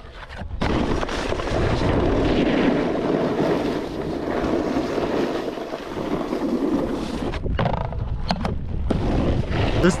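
Snowboard sliding along a tube rail and then scraping over chopped-up packed snow, a steady rushing noise mixed with wind buffeting the camera microphone. Near the end it breaks into a few short scrapes and knocks as the rider slows to a stop. The rider calls the rail hella sticky.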